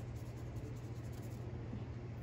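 Faint brushing of a wet watercolor paintbrush across paper, over a steady low room hum.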